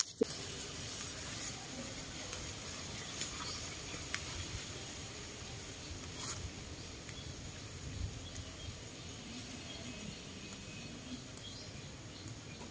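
Soft rustling of leafy stems with a few sharp snaps as wild rau cải trời greens are picked by hand, over a faint steady outdoor background.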